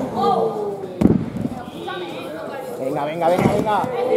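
A single hard thud on the wrestling ring's canvas about a second in, with voices shouting around it.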